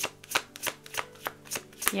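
Tarot deck being shuffled by hand: a regular series of short card slaps, about three a second.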